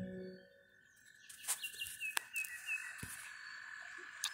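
The last notes of a handpan ring out and fade within the first half second. After a short hush, outdoor animal calls are heard: a steady high trill with a run of short, falling chirps over it, and a few sharp knocks.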